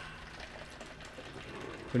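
Water running steadily from a refrigerator's water dispenser into a container: a faint, even hiss.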